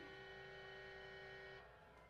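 Faint held piano chord ringing on after the voice stops, cut off about one and a half seconds in.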